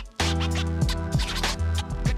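Music with percussive hits over steady low notes and held chords, coming in loudly about a fifth of a second in after a brief drop.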